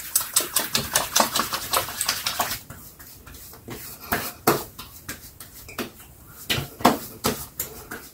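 Wet palms rubbing quickly together with aftershave splash, a rapid run of squelching smacks. About three and a half seconds in, hands slap and pat the liquid onto a freshly shaved face and neck, with a series of separate sharp slaps.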